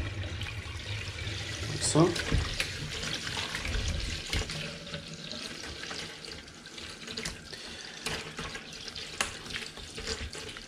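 Cold kitchen tap running steadily into a bowl of water in a sink, with light splashing as hog casings are lifted and drawn through the water to rinse off their preserving salt.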